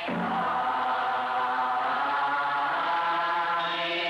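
Buddhist monks chanting a sutra together: a chorus of voices holding long, steady notes.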